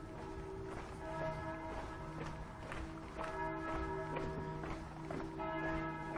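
Church bells pealing: several bells ring together, their overlapping tones restruck every second or two. Faint footsteps on pavement sound underneath.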